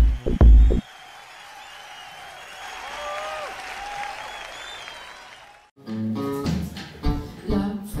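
Electronic intro music cuts off under a second in, giving way to audience applause with a few whistles that slowly fades. About six seconds in, a guitar and a woman's singing voice start the song.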